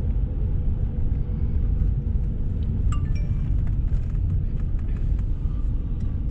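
Low, steady rumble of a Mercedes-Benz car driving slowly, heard inside the cabin. A short high-pitched ring sounds once, about three seconds in.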